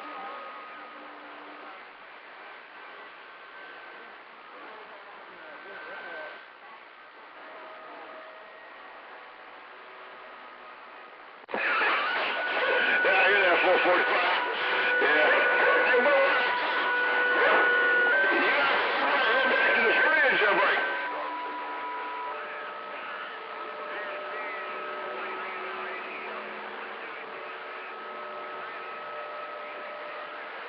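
CB radio receiver audio on a busy band during skip: hiss with several steady whistle tones and faint, garbled stations. About eleven seconds in, a strong signal suddenly comes in much louder, with garbled overlapping voices and whistles, then drops back after about ten seconds.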